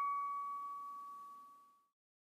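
A single struck chime-like note from a musical jingle ringing out and fading away, dying to silence near the end.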